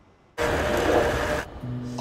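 A sudden rushing noise starting about half a second in and lasting about a second, then a quieter low steady hum.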